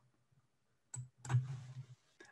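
Mostly silence over a video-call microphone, broken by a short click about a second in and then a brief faint vocal noise from the man.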